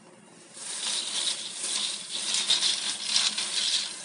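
A pot of pasta shells at a rolling boil on a gas burner, a dense bubbling crackle that starts about half a second in.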